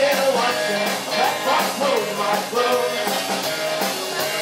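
A live rock band playing electric guitar, bass guitar and drum kit.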